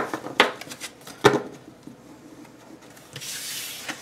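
A stack of paper sticker sheets being handled on a tabletop: three sharp taps in the first second and a half as the stack is knocked square, then a brief papery rustle near the end.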